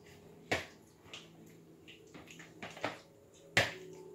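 A spoon clinking against a mixing bowl as chicken is stirred into yogurt: about six sharp, irregular clicks, the loudest near the end.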